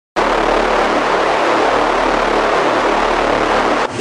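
A loud, steady rushing noise with a low rumble underneath, starting abruptly and cutting off suddenly near the end.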